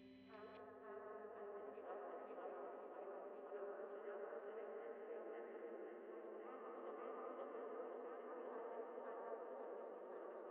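Faint, continuous buzzing that wavers in pitch, like a swarm of flies or bees, with no music under it.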